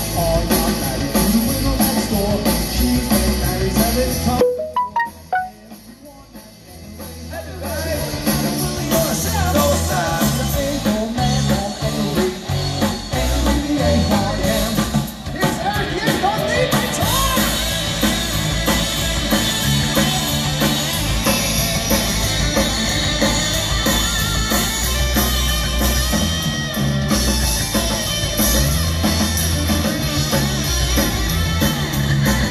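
Live rock band playing electric guitars, bass, drums and vocals. About four seconds in the music drops away to a few quiet notes, and the full band comes back in some three seconds later.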